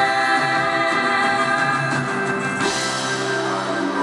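A live band playing a song, with voices holding long sung notes over a sustained chord; the sound grows brighter in the high end about two-thirds of the way in.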